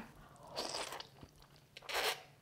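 Someone eating sweet potato glass noodles from a bowl of soup with chopsticks: soft slurping, the loudest near the end.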